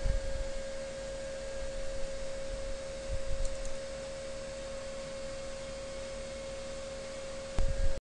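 A steady single-pitched electrical whine over hiss and low rumble, with a brief louder low rumble near the end.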